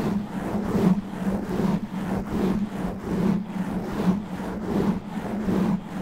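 Natural fingernails scratching fast and hard over a foam microphone windscreen, close to the mic: a dense, rough scratching that swells a little more than once a second.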